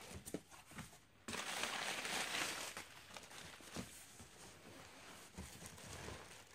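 A cardboard shipping box being slid across a table and plastic packaging inside it being handled: a burst of scraping and rustling starts suddenly about a second in, then softer crinkling with small knocks.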